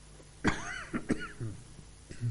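A person coughing: a sudden cough about half a second in, a second sharp one just after a second, then a short throat-clearing tail, over a low steady room hum.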